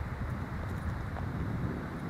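Wind buffeting the camera's microphone: a gusty, low rumbling noise with no distinct events.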